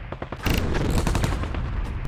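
Rapid gunfire: a dense run of closely spaced shots like machine-gun fire over a heavy low rumble, with one sharp louder report about half a second in.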